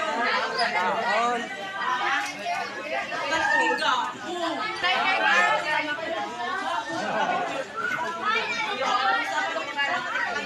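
Many students talking at once in a crowded classroom: a steady hubbub of overlapping voices, with no single voice standing out.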